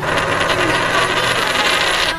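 A loud, dense, noisy sound effect laid over the edit in place of the music, which stops suddenly at the end.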